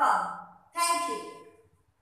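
A woman's voice: the end of one short utterance, then a second short one about three-quarters of a second in that trails off.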